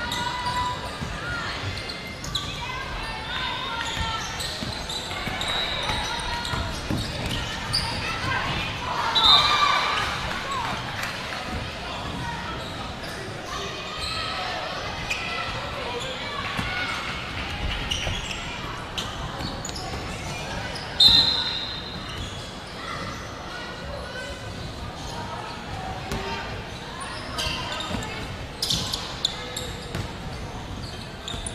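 A basketball being dribbled and bounced on a wooden gym floor, among players' and spectators' voices echoing through a large hall. Two short shrill sounds stand out above the rest, one about nine seconds in and one about two-thirds of the way through.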